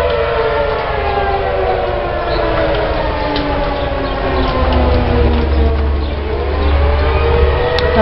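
Outdoor tornado warning siren wailing. Its pitch slides slowly down for most of the time and rises again near the end, over a steady low rumble.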